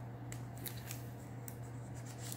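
Light paper handling: a card strip sliding against paper pages, with a few soft rustles and ticks about a third of a second, two-thirds of a second and a second and a half in. Under it runs a steady low hum.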